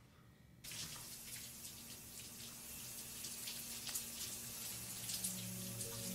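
Water running steadily, like a tap into a sink, starting suddenly about half a second in after a moment of near silence. Low steady tones come in near the end.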